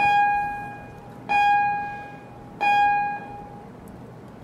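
A bell-like electronic chime sounds three times at the same pitch, about 1.3 seconds apart, each tone starting sharply and dying away over about a second.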